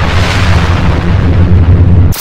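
A loud explosion-like sound effect: a burst at the start, followed by a deep rumbling tail that cuts off suddenly at the end.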